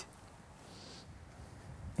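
A pause between a man's sentences: only faint background noise, with a soft hiss about half a second in.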